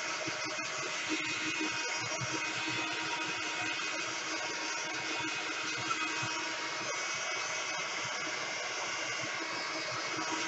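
Handheld craft heat gun running steadily, its fan blowing with a faint even motor hum underneath.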